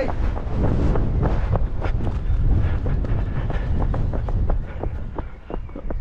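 Wind rumbling on a body-worn GoPro Hero 10's microphone, mixed with the knocks and scuffs of the wearer moving, in irregular short thuds.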